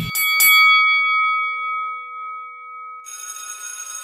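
Two quick strikes set off a ringing, bell-like chime that fades away over about three seconds. About three seconds in, a bright shimmering high tone takes over.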